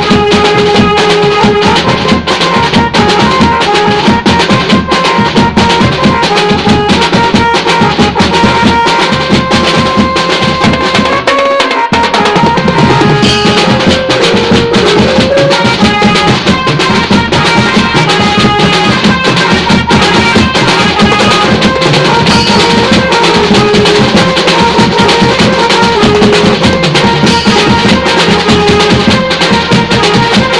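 Steel band playing a tune: steel pans ringing out a melody over lower steel pans and a steady percussion rhythm. The bass drops out for a moment about twelve seconds in, then the full band comes back.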